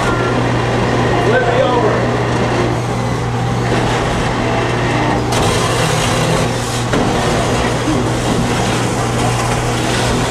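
Beetleweight combat robots fighting in an enclosed arena: a steady low hum from the spinning weapon and drive motors, with a couple of sharp knocks near the middle, and people talking in the background.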